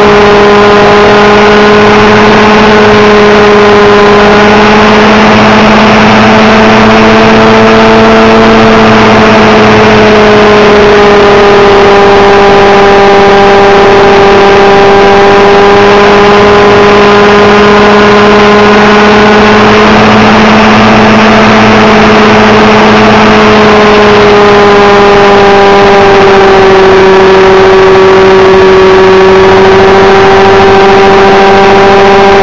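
Thunder Tiger Raptor RC helicopter's nitro glow engine and rotor running loud and close, picked up by a camera mounted on the helicopter's frame. The steady engine note drifts slightly up and down in pitch as the helicopter flies.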